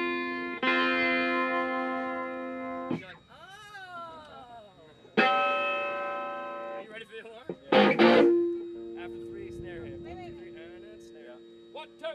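Amplified electric guitar chords struck and left to ring out: one at the start, another about five seconds in, and a third about eight seconds in whose low notes hang on and fade. Brief voice sounds and laughter come between the first two chords.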